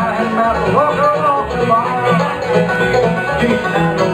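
Bluegrass string band playing live: banjo, mandolin and acoustic guitar picking over an upright double bass.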